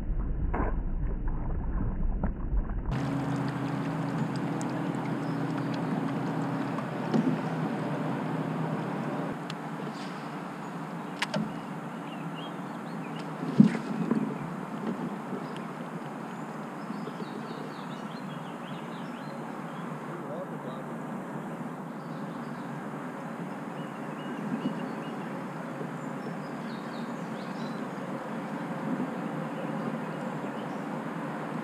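Open-air ambience aboard a fishing kayak: a steady low hum for the first several seconds, then a few sharp knocks and clicks of tackle and hull, the loudest about halfway through, over a constant hiss of air and water.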